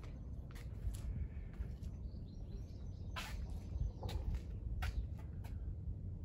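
Steady low rumble of wind on the microphone, with a scattered series of short clicks and taps, the sharpest about three seconds in.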